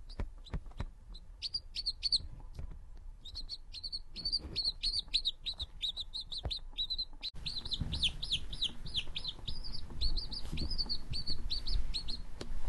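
Quail chick peeping: short, high chirps, a few scattered at first, then coming in rapid, almost continuous runs from about three seconds in. Soft knocks and rustling sit underneath.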